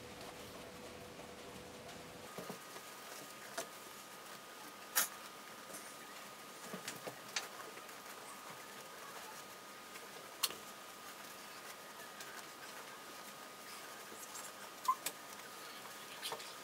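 Quiet handling of satin fabric as a gathering thread is pulled to scrunch a flounce into ruffles: faint rustling with a few scattered light ticks, over a low steady hiss and a faint thin hum.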